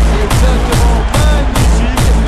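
Background music with a heavy, steady bass beat.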